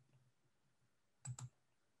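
Near silence broken by a quick double click a little over a second in: a computer click that advances the presentation slide.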